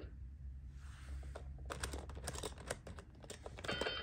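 Plastic number rings of a LeapFrog Twist & Shout Division toy being twisted by hand, giving a rapid, irregular run of clicks in the second half. Just before the end the toy starts an electronic tone.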